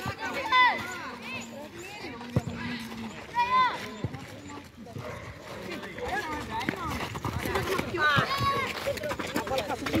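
Players' voices shouting short calls across the pitch, a few times, with a few sharp knocks of the football being kicked in between.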